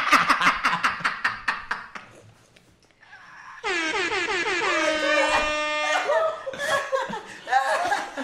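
Hard laughter from two men, then about halfway through a single held air-horn blast about two seconds long, played back as a sound effect, after which the laughing starts up again.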